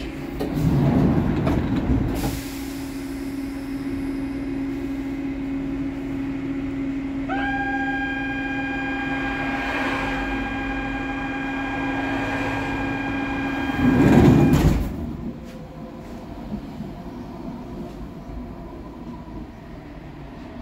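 Doors of a HÉV suburban electric train at a stop: a loud rush of air about a second in, then a steady low hum, then from about 7 seconds a continuous high warning tone for about seven seconds, ending as the doors shut with a loud burst of noise.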